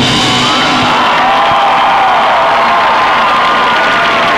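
Crowd cheering and whooping over a marching band's held chord, with no drumbeat.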